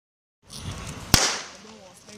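A starter's pistol fired once, about a second in, setting off the race, with a short echo trailing after the shot.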